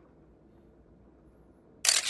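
Near silence, then near the end a single loud camera shutter sound lasting about half a second: a photo being taken.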